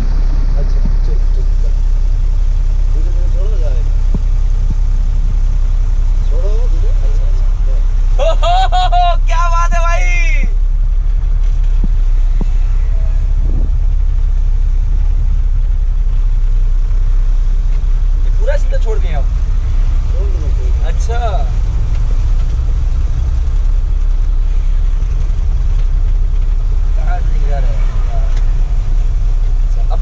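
Heavy goods truck's diesel engine running as it drives off in low gear, heard from inside the cab as a steady low drone. Short bursts of voices come over it, the loudest about eight seconds in.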